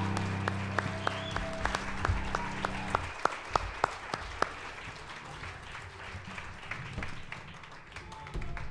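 Audience applauding over a final held musical chord, which stops about three seconds in. The applause then thins out into separate claps and fades away.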